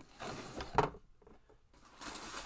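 Handling noise: a rustling scrape as a red makeup case is lifted out of its packaging and moved, ending in a sharp knock just under a second in.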